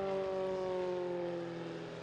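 Engine and propeller of a GEMPRO single-seat aerobatic plane droning as it makes a close fly-by, the pitch sliding slowly downward as it passes and fading slightly.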